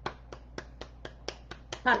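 A steady series of sharp light clicks or taps, about four a second.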